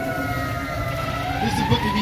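Emergency vehicle siren wailing, its pitch sliding slowly down and then rising again about halfway through.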